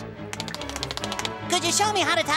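A fast run of light clicks, about ten a second, over soft background music. Near the end a short vocal sound follows.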